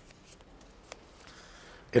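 Faint rustling and light clicks of small paper raffle tickets being handled and drawn from a container, with one sharper click about a second in.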